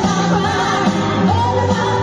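Music with singing: a sung melody held over a steady bass line, loud and continuous.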